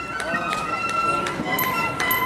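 A marching flute band playing: flutes hold notes over sharp side-drum strokes, with people talking close by.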